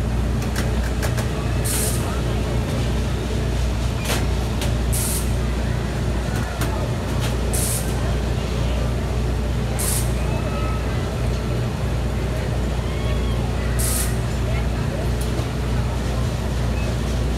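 Outdoor crowd ambience over a steady low mechanical hum, with short hisses of air every few seconds.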